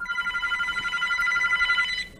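A telephone ringing with an electronic ring, a steady tone of several pitches together, that cuts off shortly before the end as the call is answered.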